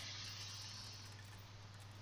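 Faint steady hiss with a low hum underneath, slowly getting quieter: background room tone and microphone noise.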